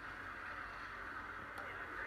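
Faint, steady background noise from a television's speaker playing a race broadcast, with no clear event standing out.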